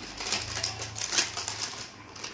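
A foil-lined plastic snack packet being pulled open at its seam and crinkled by hand, a rapid run of sharp crackles.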